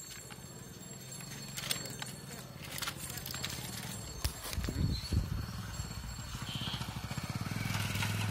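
A motorcycle engine running on the road nearby, a low steady hum that gets louder toward the end as the bike comes past. A few sharp clicks sound in the first half.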